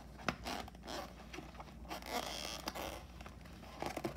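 A plastic blister-pack toy package with a cardboard back being handled and rubbed against a wooden table: rustling, scraping plastic with a sharp click a fraction of a second in and a longer rasp about halfway through.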